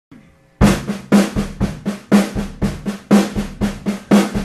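A drum kit playing the opening groove of a soul song on its own, coming in about half a second in, with a heavier accented stroke about once a second and lighter snare and kick strokes between.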